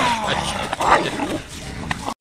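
A dog barking and yelping amid a scuffle in dry leaves, with a person's voice, as the dog and the person tumble together on the ground.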